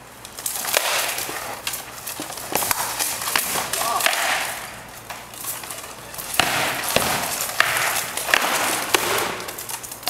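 SCA heavy-weapons sparring: rattan sword and spear blows cracking against a wooden shield and steel plate armour, many sharp knocks in irregular flurries, the busiest a little past halfway through.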